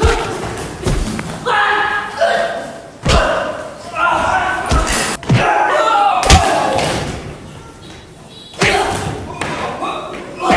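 Thuds of punches and kicks landing in a fist fight, about six blows spread through the clip, with men's grunts and shouts between them. The hits echo in a large bare room.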